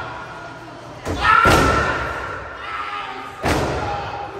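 Two loud impact thuds from the wrestling ring, about two seconds apart, the first the louder, each echoing in the hall. Voices follow the first impact.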